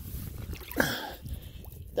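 A man's short vocal sound, falling in pitch, about a second in, like a grunt or throat-clearing, over a steady low rumble of wind on the microphone.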